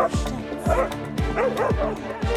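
Mixed-breed dog on a leash barking in alarm at another dog, a few barks about half a second apart. Background music with a steady beat runs underneath.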